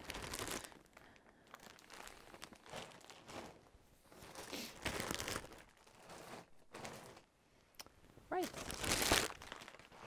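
Clear plastic bag crinkling in irregular bursts as it is handled, loudest near the end.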